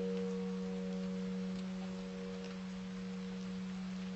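Slow relaxing piano music: one low note held and ringing steadily as it slowly fades, with fainter higher notes dying away above it.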